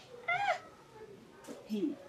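A cat meows once, a short rising-then-falling call about a quarter second in. Near the end a brief low voice sound follows.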